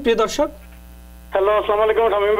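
A person's voice over a telephone line, heard briefly at the start and again from just past the middle, with a narrow, phone-band sound. A steady electrical mains hum runs under it.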